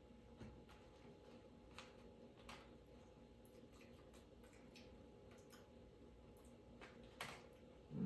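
Near silence: room tone with a few faint, scattered clicks and taps from hands working the small plastic tray and wrappers of a Popin' Cookin candy kit.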